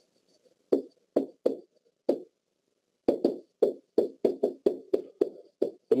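A pen tapping and stroking across the surface of a SMART Board interactive whiteboard as words are handwritten: four scattered knocks, then a quicker run of about a dozen from about halfway in.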